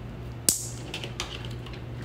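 Handling of a red plastic vampire-style T-tap splice clip as it is worked off a wire: one sharp click about half a second in, then a few faint ticks, over a steady low hum.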